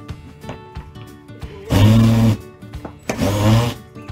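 Power drill run in two short bursts, about a second apart, each a steady motor whine, over background music with acoustic guitar.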